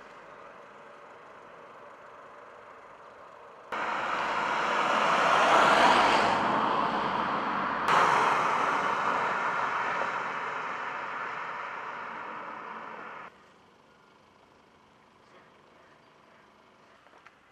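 Car driving past close by on a paved road: tyre and engine noise swells to a peak and then fades away, with sudden starts and a sudden cut-off where the shots change.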